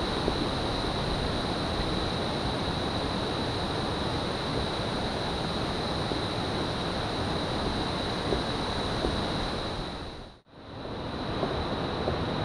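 Steady rushing noise of water pouring over a river weir, mixed with wind on the microphone, with a thin, steady high whine over it. The sound drops out briefly about ten seconds in, then returns.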